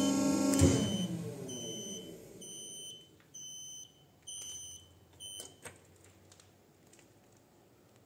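Hydraulic pump motor of a Weili MH3248X50 cold press running, switched off at the control-panel button with a click about half a second in, its hum dying away over the next two seconds. Then several short, high electronic beeps follow, about half a second each.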